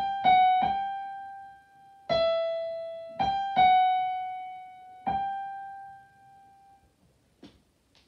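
Digital piano playing a slow single-note melody, the violin part of a folk song, seven notes in all with pauses between phrases. The last note rings out and fades about a second before the end, followed by two faint knocks.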